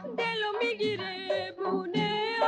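A Persian film song: a woman's voice sings a wavering, ornamented line over a band led by a tar, with short bass notes repeating underneath.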